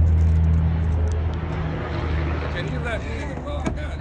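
A motor vehicle's engine running close by, a steady low hum that fades away over the first three seconds.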